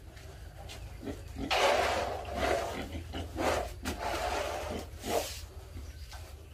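Pigs grunting in a run of harsh, rough calls, the loudest about a second and a half in and the last just before the end.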